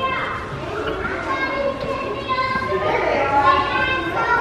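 Young children's high-pitched voices, talking and calling out, in a large indoor room.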